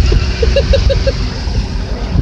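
Vehicle cabin noise while driving up a rough dirt road: a steady low rumble of engine and tyres. About half a second in comes a quick run of five short high notes.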